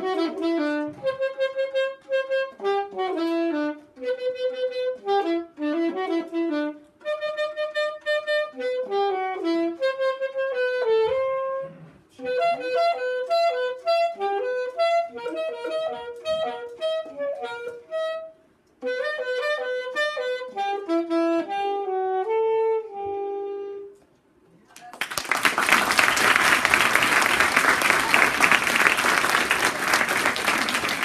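Solo unaccompanied saxophone playing a melody of quick notes in short phrases, with brief breaks, ending on a held low note about 24 seconds in. Then loud applause.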